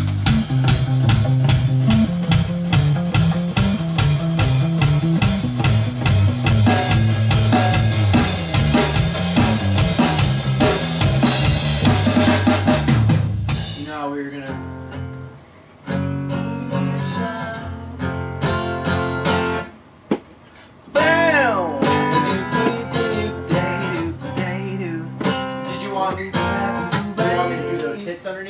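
Band music led by a red Hagstrom electric bass playing a stepping bass line, with drum kit, cymbals and guitar. About halfway through the cymbals drop out and the music thins to a sparser part, with gliding notes later on.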